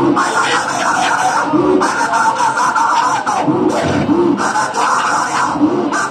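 Loud worship music and congregation voices at a Pentecostal service, the mix harsh and distorted, with a pitched sound rising and falling in a repeating pattern about every second and a half.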